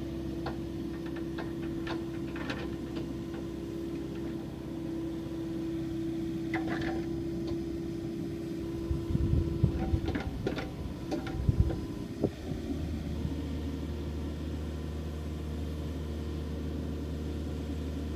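Komatsu PC50MR-2 mini excavator running while it is operated, its engine and hydraulics working as the boom swings and lifts. A steady tone carries on until about two-thirds of the way in, when the machine drops to a lower, deeper note. A few heavy thumps fall just before that change, and light clicks are scattered throughout.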